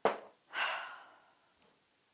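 A woman sniffing a fragrance-oil scent strip through her nose. A sudden short sound comes right at the start, then a longer breathy inhale about half a second in that fades out.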